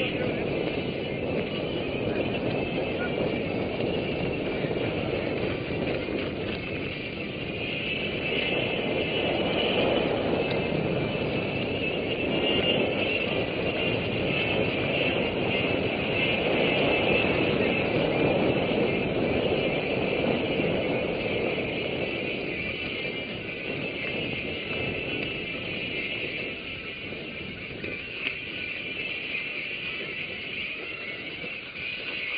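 Steady wind and rolling noise on a mountain bike's camera as the bike is ridden over dirt, swelling and easing with speed.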